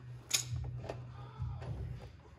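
A few sharp metallic clicks from a ratchet working on the rear suspension of a car, over a low steady hum.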